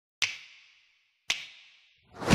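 Two sharp hits about a second apart, each fading out in a ringing echo over about half a second, with silence between them.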